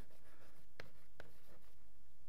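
Chalk writing on a blackboard: faint scratching of the chalk stick, with two short sharp taps as strokes are laid down near the middle.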